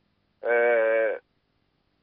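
A man's drawn-out hesitation sound "eh", starting about half a second in and held at a steady pitch for under a second.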